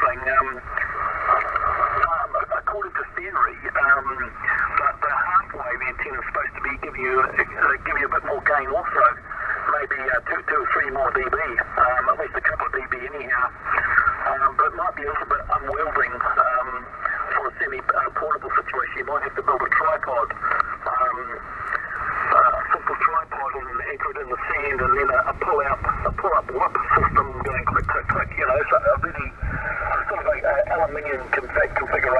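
A man talking over long-distance HF single-sideband radio, heard from the Yaesu FT-857D transceiver's speaker: a thin, narrow-band voice with the multipath echo of the path on his signal.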